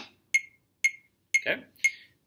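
Electronic metronome clicking at 120 beats per minute: four short, bright clicks half a second apart, left sounding alone after the practice-pad strokes stop.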